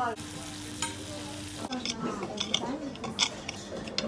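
Steak sizzling on a hot iron serving plate, a steady hiss that cuts off suddenly after about a second and a half. Then knife and fork click against the plate as the meat is cut.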